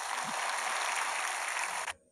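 Studio audience applauding, a steady patter that cuts off suddenly near the end.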